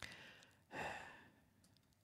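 A man breathing out once, a short sigh close to the microphone, about three-quarters of a second in, after a faint click at the start; otherwise near silence.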